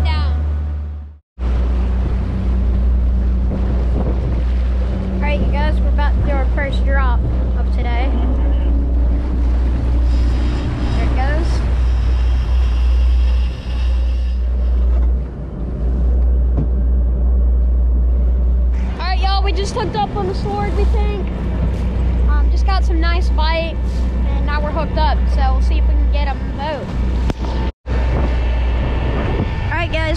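A moving boat's steady low engine rumble with water rushing past the hull, and indistinct voices over it in places. The sound cuts out briefly twice, once about a second in and once near the end.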